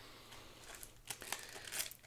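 Faint crinkling of a foil Pokémon booster pack wrapper being handled, with a few sharp crackles in the second half.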